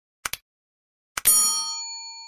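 Subscribe-button sound effect: a quick double mouse click, then about a second in another click and a bell ding that rings with several clear tones and fades away over nearly two seconds.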